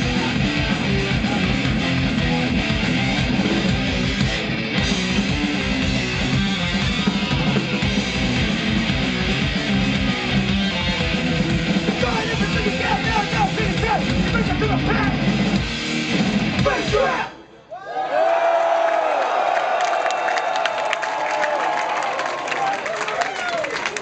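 Thrash metal band playing live, distorted guitars and fast drums at full volume, until the song stops abruptly about 17 seconds in. After a brief gap comes a thinner wavering sound with no bass, taken for crowd noise.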